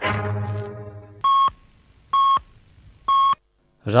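The last chord of a violin intro tune dies away in the first second. Then come three short, identical electronic beeps about a second apart: the radio time-signal pips marking the hour.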